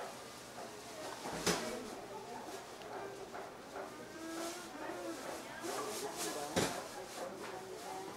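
Indistinct voices talking in the background, with two sharp knocks, one about a second and a half in and another about five seconds later.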